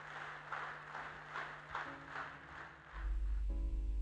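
Audience applause, fading as background music comes in with held tones and, about three seconds in, a deep low drone.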